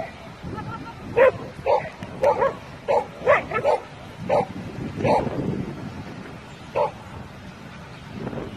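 A dog barking during an agility run: a quick string of short sharp barks in the first five seconds, then one more near the end.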